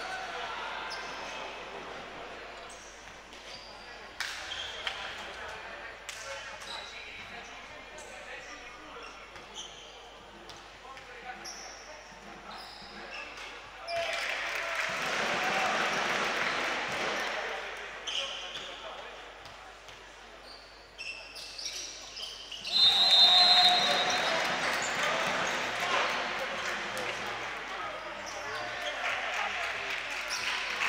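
Basketball game sounds in a gym hall: a ball bouncing on the hardwood and sneakers squeaking. Crowd noise swells up around the middle and again later, more loudly, and a referee's whistle blows briefly just before the louder swell.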